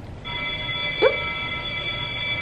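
Electronic classroom bell or chime tone: several pitches sounding together, holding perfectly steady with no decay.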